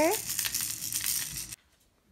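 Rustling and light clicking of children's plastic toys being handled. It cuts off abruptly about one and a half seconds in.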